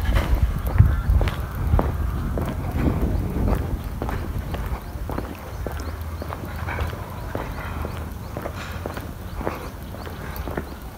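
Footsteps of a person walking downhill, a run of irregular short steps over a low rumble on the microphone, louder in the first few seconds.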